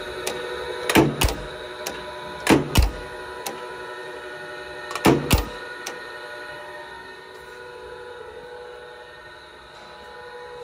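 Steady machinery hum with several level tones. Pairs of sharp knocks about a third of a second apart come three times in the first half, then stop, and the hum eases a little.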